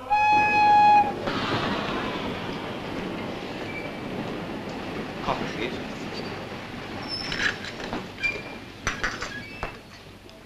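A train whistle sounds one steady note for about a second. It is followed by the running noise of a train, which slowly fades. A few sharp clinks come near the end.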